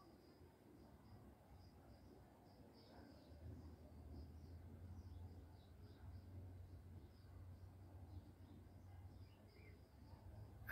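Near silence: faint outdoor background with soft, high chirps repeating throughout, and a faint low rumble from about three to eight seconds in.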